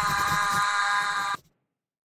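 A held, buzzy electronic tone closing the outro music sting, which cuts off abruptly about one and a half seconds in. Dead digital silence follows.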